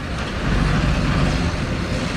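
Four-wheeled armoured car driving past on a dirt track, its engine running steadily with a low, even drive noise.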